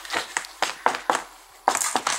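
A stiff plastic panel being handled and flexed by hand, giving a quick irregular run of taps and knocks with a louder rustling scrape near the end.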